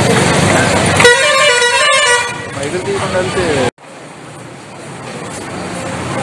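Outdoor street noise and chatter, with a vehicle horn sounding for about a second, a second in. The sound cuts off suddenly a little past halfway and comes back quieter, slowly growing louder.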